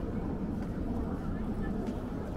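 Outdoor ambience of a pedestrian square: a steady low rumble with faint, indistinct voices of people nearby.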